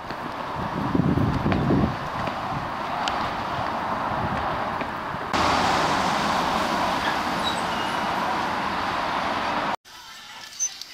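Steady outdoor traffic noise from a busy road, an even rushing hiss that steps up in level about five seconds in and cuts off suddenly near the end.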